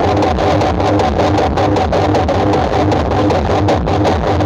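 Music with a heavy bass and a steady drum beat, played loud through a large PA sound system.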